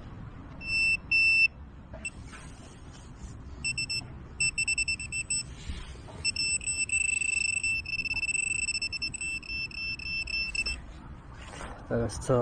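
Handheld metal-detecting pinpointer probe beeping with a high, shrill tone as it is worked through soil: two loud beeps about a second in, then runs of quick beeps and a longer near-steady tone in the middle, the beeping speeding up and slowing as the probe nears the buried metal target.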